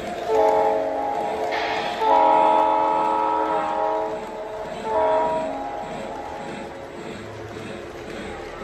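Model diesel locomotive's sound system sounding a multi-note horn, two long blasts and a short one, over the rumble of the train running on the track. The horn comes from an Atlas Santa Fe GP-35 model.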